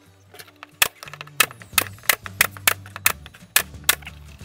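Air-powered stapler (MAX) firing staples into plywood: about nine sharp shots in quick succession, starting just under a second in, over background music.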